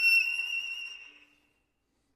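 Solo violin holding a single high, thin note that fades away over about a second, leaving silence in the second half.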